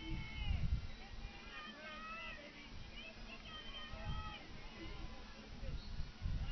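Faint, distant shouted calls from women's lacrosse players on the field, several short voices rising and falling in pitch, over a low rumble.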